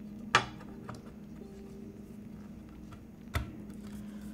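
Top frame of a custom mechanical keyboard being fitted onto its case by hand, with two sharp clicks as it seats, one just after the start and one near the end.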